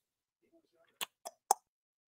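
Three short, sharp clicks or pops in quick succession, about a quarter second apart, the last one loudest.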